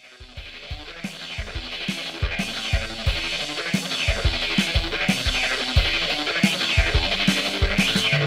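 Background music fading in from silence and growing steadily louder, with a regular drum beat.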